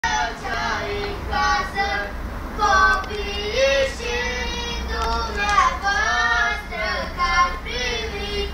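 A single high voice singing a Romanian Christmas carol (colindă) in short phrases with held, wavering notes, over the steady low rumble of the moving vehicle.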